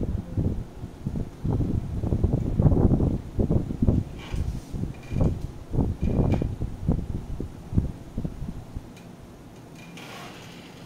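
Colored pencil being scribbled back and forth on paper at a desk, heard as irregular, rapid, dull rubbing and scraping strokes that die down near the end.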